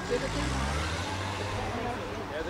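A car passing by on the street: its low engine hum rises in pitch and the tyre noise swells about a second in, then eases off.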